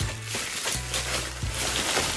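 Bubble wrap crinkling and crackling with irregular small clicks as it is handled and pulled apart, over background music with a low bass line.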